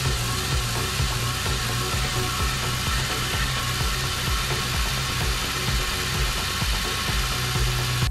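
Jeep Compass four-cylinder engine running steadily at idle under the open hood, test-run after the radiator coolant hose was replaced.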